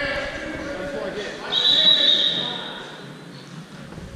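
A referee's whistle blows once, a single shrill blast of under a second about a second and a half in, over the voices of people in the gym.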